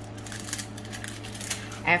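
Hands handling and smoothing the plastic film over a diamond painting canvas on a desk: a quiet rustle with a few small ticks, over a steady low hum.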